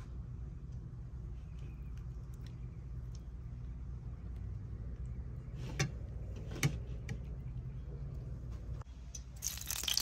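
Low, steady rumble with two light clicks about six seconds in, as a fish fillet is turned in egg batter on a ceramic plate. A louder hiss comes in near the end.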